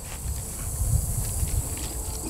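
Steady high-pitched insect drone with a low rumble underneath.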